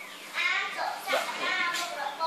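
Children's voices talking.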